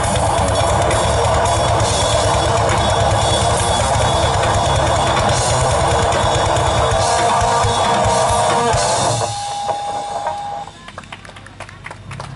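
Live metal band with distorted electric guitars and drum kit playing loud, then stopping about nine seconds in. A single high note rings on for about a second after, followed by quieter scattered clicks.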